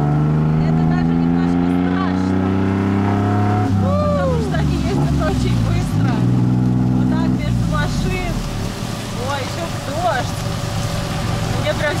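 Tuk-tuk engine pulling hard as the three-wheeler accelerates. The pitch climbs for about four seconds, drops at a gear change, climbs again, then falls back to a lower, rougher note about seven seconds in.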